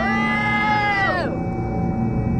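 A woman's long, high-pitched cry of 'oh', held for about a second and then falling away in pitch, a reaction as an insect works its way out of an ear. A low music bed runs underneath.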